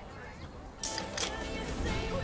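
Soda can cracked open with a sharp snap and a short fizzing hiss about a second in, followed by a few more sharp clicks. Faint party voices come first, and pop music starts up as the can opens.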